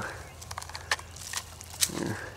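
A few short crackles and snaps from dry twigs and leaf litter, spaced irregularly, as someone moves and handles things in thick brush.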